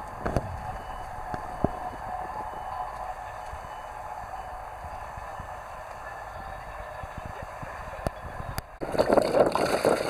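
A steady low rumble with a faint hum for most of the stretch, then, about nine seconds in, a sudden louder rush and splash of water as a bucket of trout and water is tipped out into a stream.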